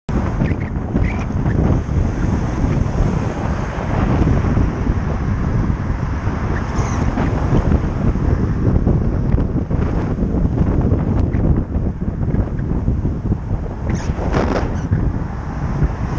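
Steady low rumble of wind buffeting a cyclist's camera microphone while riding, with overtaking car noise mixed into it.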